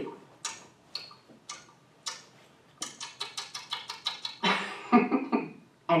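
A woman imitating a hungry baby's nasal snorting: short sniffs and snorts through the nose, spaced out at first, then quickening to about five a second, with a louder grunt-like snort near the end. It sounds like a little pig, and it comes through a television's speaker into the room.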